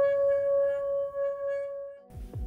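Singing bowl played by rubbing a mallet around its rim: one steady, sustained ringing tone with fainter higher overtones, wavering gently in loudness.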